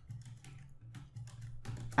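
Fairly quiet typing on a computer keyboard: a scattered run of single keystrokes.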